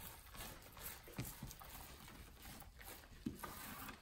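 Faint handling sounds of gloved hands rolling up a strip of resin-wetted carbon fibre cloth on a work table, with a few soft taps.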